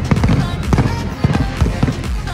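Footfalls of a dense crowd of runners on asphalt, many sharp irregular slaps and knocks close by, over background music.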